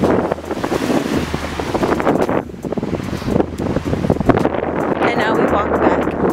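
Gusty wind buffeting the microphone, a loud uneven rumble, with a few brief voices breaking through about five seconds in.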